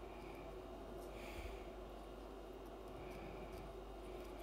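Quiet room with a steady low hum and three faint, soft rustles as hands work flexi rods out of curled locs.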